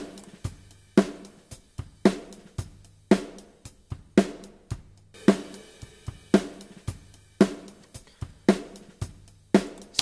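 Recorded acoustic drum kit playing back a steady groove, a sharp snare hit about once a second with kick and cymbal hits between.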